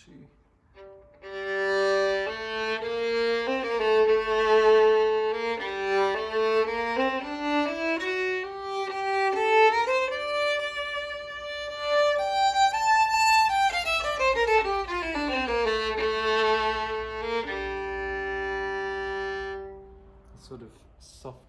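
Gliga St. Romani II 4/4 violin played solo with a bow, with a mellow, sweet tone. The melody starts about a second in, climbs with vibrato to high notes, comes back down, and ends on a long held note.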